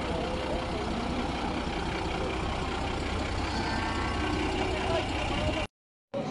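Steady low rumble of outdoor market noise with faint distant voices mixed in, cut off abruptly near the end.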